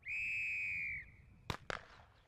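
Starting signal for a 300 m sprint: a steady high-pitched tone lasting about a second, then two sharp cracks in quick succession about half a second later.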